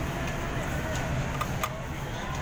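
Steady low background rumble with faint voices in the background, and two light clicks about a second and a half in.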